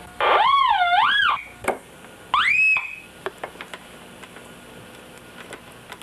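Home-built Syncrometer's audio oscillator sounding through its small speaker as the probe makes contact: an electronic tone that warbles up and down for about a second, then after a pause a second tone that glides up in pitch and holds briefly. A few sharp clicks fall between and after the tones.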